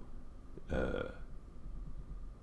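A man's short, low hesitation sound "euh" about a second in, between stretches of quiet room tone.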